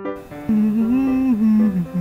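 A voice humming a wavering tune over background music. It comes in about half a second in, after the last of a piano phrase fades.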